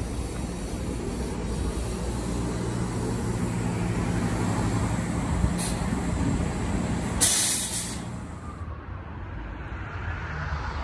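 A city bus pulling away from a stop, its drive humming steadily with low tones. A brief hiss of air comes about five and a half seconds in, then a louder air hiss lasting under a second, after which the hum fades as the bus leaves.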